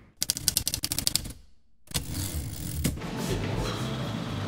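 Rapid run of typewriter key clacks, about a dozen in just over a second, stopping dead. After a short silence comes low room ambience with a couple of soft knocks.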